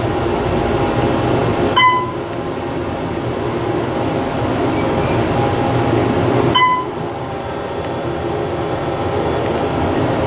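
Steady hum and rumble of an OTIS Series 1 hydraulic elevator car travelling upward, heard from inside the cab. Two short beeps come about five seconds apart.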